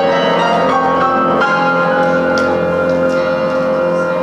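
Jazz piano trio playing a slow ballad: piano with held, ringing chords over upright bass and drums.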